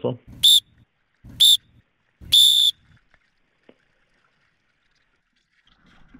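A whistle blown in three blasts about a second apart, two short and a last longer one, each a single high steady tone. It is the signal to start the joust.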